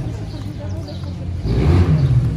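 Yamaha TMAX 530 parallel-twin engine running steadily at low revs, then revved about one and a half seconds in and getting louder.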